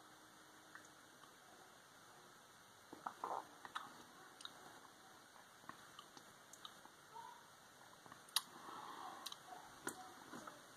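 Faint mouth sounds of a man tasting a sip of beer: scattered small clicks and smacks of lips and tongue, starting about three seconds in, over near-silent room tone.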